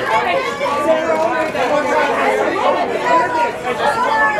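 Several voices talking and calling over one another: press photographers shouting to a model for poses.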